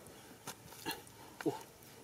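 A short hand digging tool striking and chopping into dry, cracked mud, about two strokes a second, with a brief voiced exclamation near the end.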